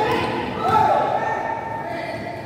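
A basketball being dribbled on a gym floor, with players' and spectators' voices calling out in the echoing hall.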